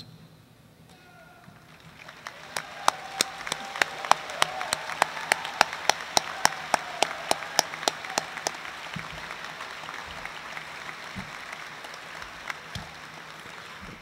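Audience applauding. The applause builds about two seconds in, with one nearby pair of hands clapping sharply about three times a second through the middle, then thins out gradually toward the end.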